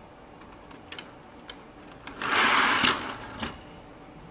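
Two die-cast toy cars rolling fast down a plastic race track: a short, loud rolling rush about two seconds in, with sharp clicks as they reach the end of the track.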